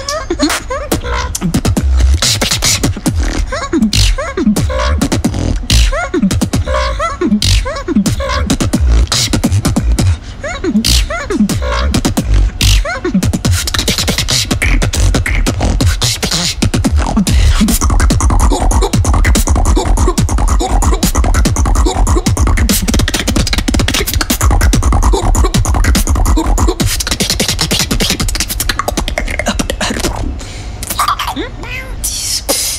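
Solo vocal beatboxing into a handheld microphone: fast drum sounds (kicks, snares and clicks) over a heavy bass. The first half has many quick falling pitch sweeps, and from a little past midway it turns into a denser, more continuous bass groove.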